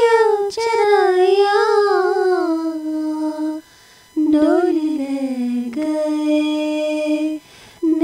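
A woman singing a slow, raga-like melody, holding long notes with sliding ornaments. Her singing comes in phrases broken by short pauses about three and a half and seven and a half seconds in.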